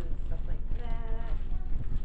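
A woman's voice, talking with one long drawn-out, wavering vowel near the middle, over a steady low hum.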